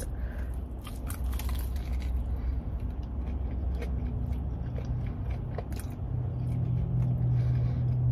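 Close-up biting and chewing of a fried, potato-cubed cheese corn dog: a run of short crunchy crackles from the fried crust. A low steady hum sits underneath.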